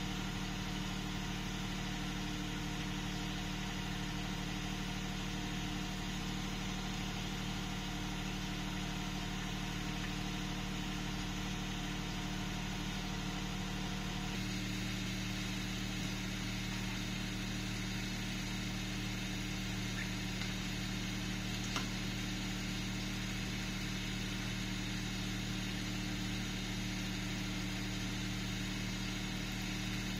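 A steady low mechanical hum, like a motor running, that shifts slightly in tone about halfway through, with a faint click or two later on.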